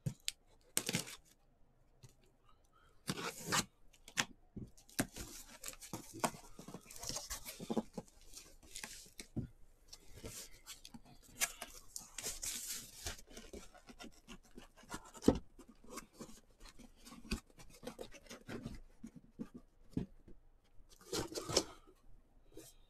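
A cardboard case being opened and its boxes pulled out: tape and cardboard tearing and scraping in irregular bursts, with scattered knocks as the boxes are handled and set down.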